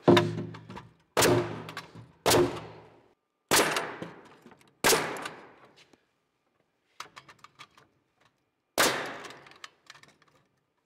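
Pneumatic framing nailer driving nails through a 2x4 into a wood stud: five sharp shots about a second apart, a pause with a few light clicks, then one more shot near the end, each shot ringing briefly in the wood.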